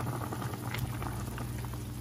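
Pork broth boiling hard in a skillet, bubbling steadily with small pops, as a metal ladle stirs through it, over a steady low hum.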